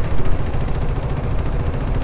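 Steady low rumble of the KTM Duke 390's single-cylinder engine running at low revs in slow traffic, mixed with the noise of the surrounding vehicles.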